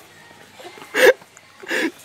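Two short voice-like yelps: a loud one about a second in and a weaker one near the end.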